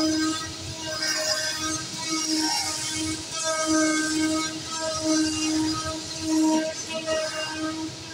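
Zünd digital flatbed cutter working a cardboard sheet: a buzzing tone that switches on and off every half second or so as the tool heads cut, over a steady machine noise.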